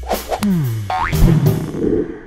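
Cartoon-style transition sound effect with a short music sting: a pitch that slides down, then a quick upward slide about a second in, then a fuller sound that fades out near the end.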